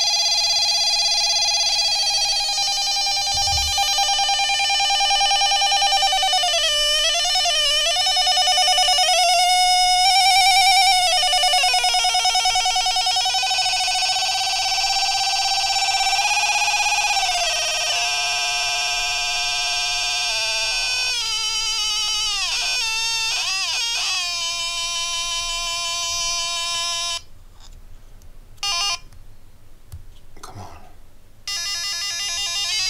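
Homemade Arduino-based sound generator playing through its small speaker: a continuous electronic tone with many overtones, its pitch dipping, wobbling and stepping lower several times as its tone knobs are turned. It cuts off about 27 seconds in, with one short burst a couple of seconds later.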